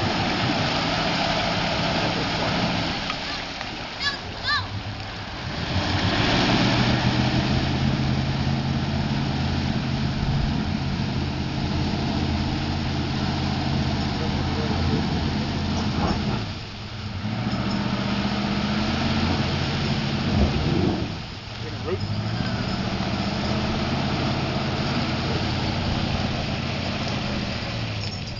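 1999 Dodge Ram pickup's engine running under heavy throttle as the truck churns through a flooded mudhole, with the wash of water and mud thrown by the tyres. The revs drop and pick back up a few times, sharply around the middle and again a few seconds later.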